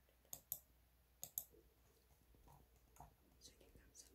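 Near silence with a few faint, sharp clicks: two quick pairs in the first second and a half, then fainter single ones later.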